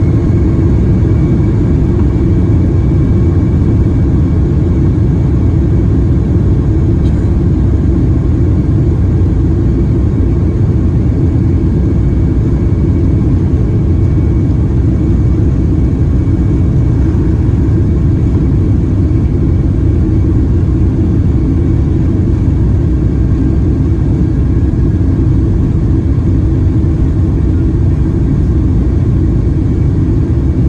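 Boeing 767-300ER jet heard from inside the cabin over the wing while taxiing: a steady, loud low rumble from the engines and the aircraft rolling on the ground, with a faint, steady high engine whine above it.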